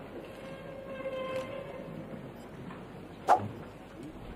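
Room noise of people getting up and moving about in a courtroom during a recess. A faint held tone comes about a second in, and a single sharp knock a little after three seconds in is the loudest sound.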